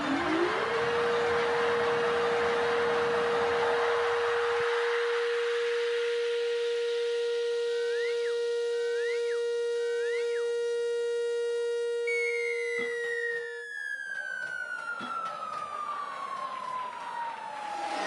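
Siren-like electronic tones in an electroacoustic composition: a pure tone glides up and then holds steady over a hissing noise wash that thins out, with three short rising chirps about halfway through. The held tone cuts off after about 13 seconds and a single slow falling glide takes over until the end.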